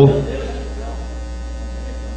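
Steady low electrical mains hum from a microphone's sound system, heard in a pause in speech. A man's amplified voice trails off in the first moment.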